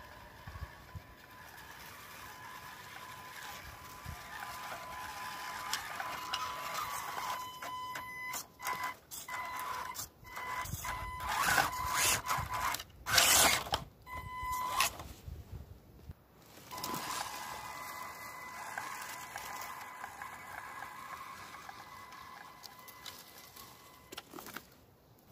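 An RC crawler's electric drivetrain whines steadily at a high pitch, growing louder as the truck approaches. In the middle it is joined by loud, irregular crunching and scraping as the tyres climb over wet leaves and sticks close by. After that the whine goes on more softly as the truck moves off.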